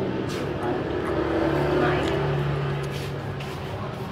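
Indistinct voices talking in the background, with a low steady hum through the middle and a few light clicks.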